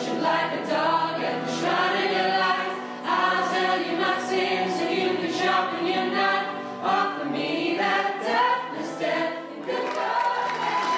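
A choir singing a song in harmony, several voices together in sung phrases.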